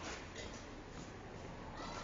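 Faint classroom room noise with a few soft clicks or taps during a pause in the talk.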